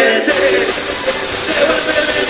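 Live band music from a circus-style horn band, heard from inside the crowd through a phone microphone, with pitched horn and voice lines. About a quarter second in, a bright hissing wash of noise comes in over the music and stays.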